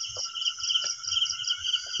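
Night insects, crickets among them, in a steady high chorus that pulses about four to five times a second, over a fainter unbroken high trill.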